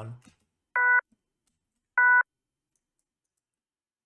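Two short stabs of a Serum software-synth pad-lead patch, each about a quarter second, starting and stopping abruptly and about a second apart. Its fundamental is low-cut away so only the upper harmonics sound, with light distortion and a flanger on it.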